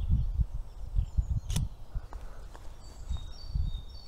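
Irregular low wind rumble on the microphone, with a single sharp click about one and a half seconds in from the Nikon D800's shutter firing.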